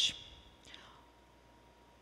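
A pause in a woman's lecture: the hissing end of her last word, a faint breath-like sound just under a second in, then quiet room hiss.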